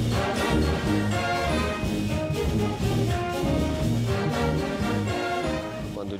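A wind band playing, with trumpets and the rest of the brass section to the fore in sustained, full chords.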